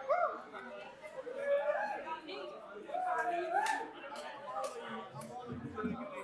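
People talking in the room, quiet and indistinct, with a few light clicks.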